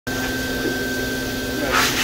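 A steady mechanical hum with a thin high whine running through it, and a short hiss just before the end.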